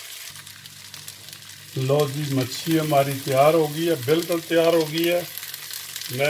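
Breaded fish fillets frying in shallow oil in a grill pan, a steady sizzle. A person's voice talks over it from about two seconds in.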